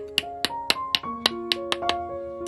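Hammer tapping a small nail into a teak wood corner joint, about four quick, sharp strikes a second. Background music with held keyboard notes plays under the strikes.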